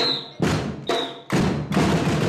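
Samba percussion band playing a break: two sharp accented drum strokes about a second apart, each with a brief high ring. Then the full drum ensemble comes back in together a little past the middle.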